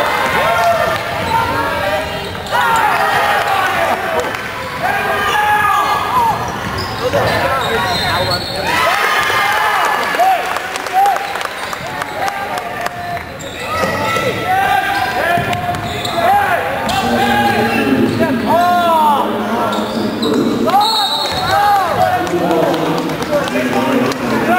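Basketball game sounds: a ball dribbling on the hardwood court and sneakers squeaking in many short chirps as players run and cut, over spectators' shouting and chatter.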